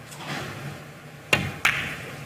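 A pool shot: the cue tip strikes the cue ball with a sharp click, and about a third of a second later the cue ball clicks against an object ball, over a faint steady background.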